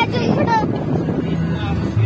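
A car being driven, heard through an open side window: steady engine and road noise with wind on the microphone. A voice is heard briefly near the start.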